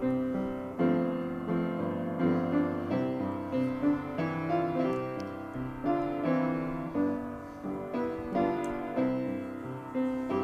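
Solo piano playing a slow hymn verse, chords struck about once a second.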